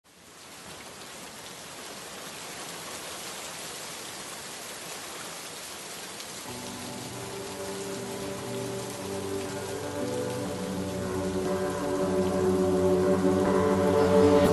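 Steady rain hiss fades in at the start. About six and a half seconds in, it is joined by sustained music chords that swell louder toward the end.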